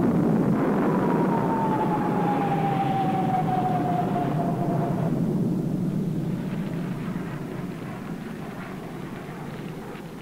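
Jet aircraft passing: a loud rushing roar with a whine that falls steadily in pitch over the first five seconds, then fades away through the rest.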